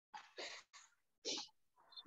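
A person's faint, short breathy puffs, about four in quick succession, with no voice in them.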